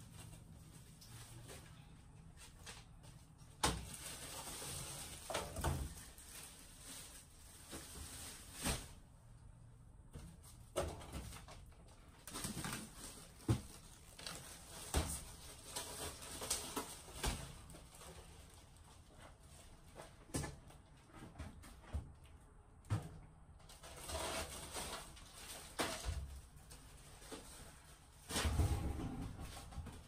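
Irregular knocks, clicks and rustling as supplies are handled and put away inside a food trailer, with a louder cluster of clatter near the end.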